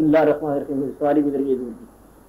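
A man speaking in a slow, drawn-out voice on an old lecture recording, breaking off shortly before the end, leaving only tape hiss.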